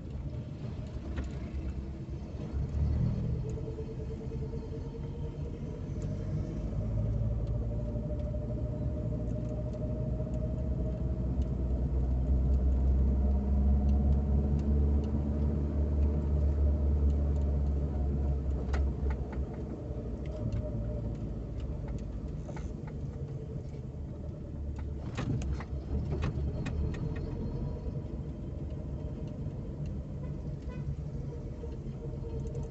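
Car engine and road rumble heard from inside the cabin while driving in town traffic. The engine note rises slowly as the car speeds up, and the low rumble is loudest midway through. A few faint clicks come near the end.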